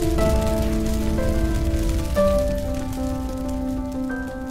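Slow ambient music of long held notes that change every second or two, over a steady crackling hiss.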